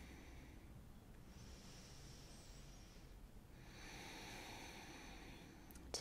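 Faint, slow, deep breathing by a person holding a stretch. There are two long breaths: one starts about a second in, and a longer one starts about three and a half seconds in.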